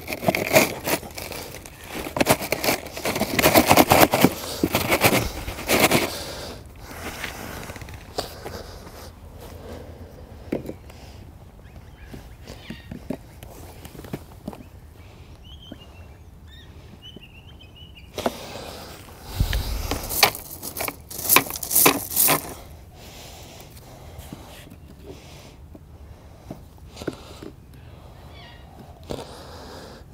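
A plastic irrigation valve box being worked into its hole over solenoid valves: irregular scrapes, knocks and gravel crunching. The handling is busiest in the first six seconds and again about twenty seconds in, with sparse clicks between.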